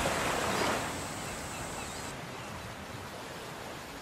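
Gentle waves washing on a sandy shore: a soft, steady hiss of surf that slowly fades.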